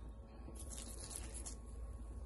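Faint bubbling of a stainless pot of water at the boil with pork and onion in it, with a short, faint crackling hiss about half a second in.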